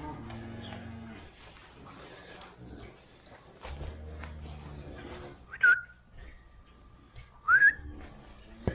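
Cattle lowing in the barn, with two short, sharp whistles about five and a half and seven and a half seconds in, the second one rising; the whistles are the loudest sounds.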